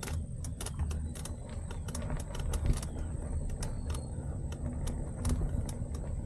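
Fat-tyre mountain bike ridden over a rough dirt path: a steady low rumble with irregular clicks and rattles from the bike, a few each second.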